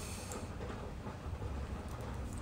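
A low, steady background hum with faint noise and no distinct event.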